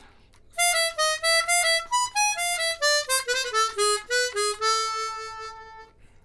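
Hohner chromatic harmonica playing a jazz phrase over E7: a run of short notes stepping mostly downward, then one long held note near the end as it resolves to A minor.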